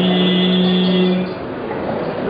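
A man's reciting voice over a microphone and loudspeakers, holding one long, steady note that draws out the end of a Qur'anic verse, stopping about a second in; after it only the hall's background noise remains.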